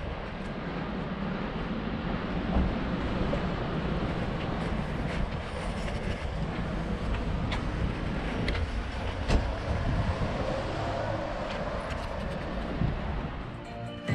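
Steady city street noise: a low rumble of passing traffic, with a few scattered knocks.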